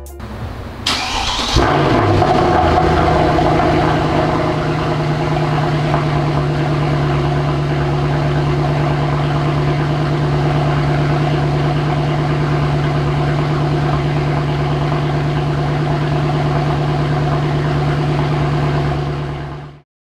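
Mercedes-Benz W204 C63 AMG's 6.2-litre V8 (M156) starting: a brief crank about a second in, catching with a surge, then settling into a steady idle.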